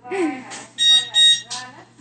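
Oven timer beeping twice in quick succession about a second in, signalling that the baking time is up.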